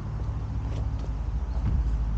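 Footsteps crunching lightly on dry pine needles, a few soft crunches over a steady low rumble.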